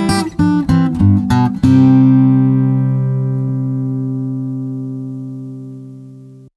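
Acoustic guitar music: a run of plucked notes, then a chord struck about two seconds in that rings on and slowly fades.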